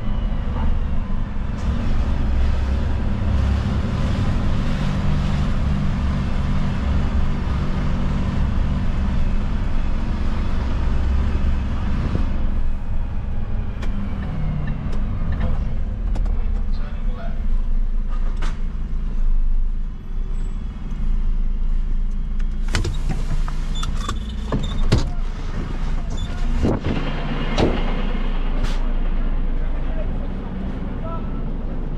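Refuse collection truck (dustcart) engine running as the truck drives, a steady low rumble. In the last third come several sharp knocks and clicks as it comes to a stop.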